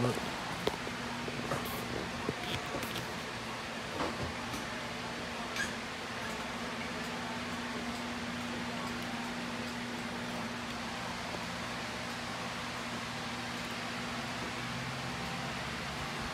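Steady mechanical hum with a low, even tone under a soft hiss, with a few faint clicks and taps in the first six seconds.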